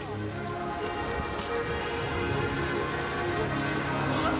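A large building fire crackling and hissing, a dense run of small irregular cracks over a steady rushing noise, with steady tones running underneath.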